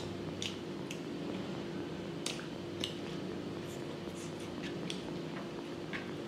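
Close-up eating sounds: chewing a mouthful of pork curry and rice, with scattered wet mouth clicks and squishes, and fingers mixing rice on the tray near the end. A steady low hum runs underneath.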